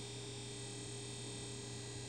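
Quiet steady electrical hum with faint hiss: the recording's background between words.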